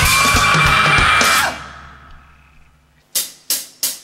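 Live rock band with electric guitars, bass and drum kit playing the last bars of a song, which stops abruptly about a second and a half in and rings away. Near the end, three evenly spaced hi-hat strikes count in the next song.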